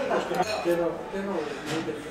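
Voices talking at a table, with a couple of light clinks of tableware on a plate.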